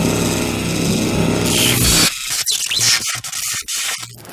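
Electronic title music: a held synth chord over a noise swell that cuts off about two seconds in, followed by scattered glitchy clicks and short swishes.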